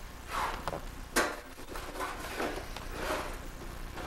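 A metal tin box knocked and clattered about on a high-chair tray, a few scattered knocks with one sharp loud knock about a second in.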